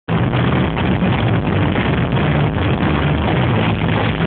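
A live punk-rock band playing loud, with electric guitars, bass and a drum kit blurred together into a dense, distorted wash.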